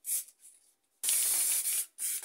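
Aerosol spray paint can spraying: a short hiss just after the start, then after a brief pause a longer steady hiss of about a second.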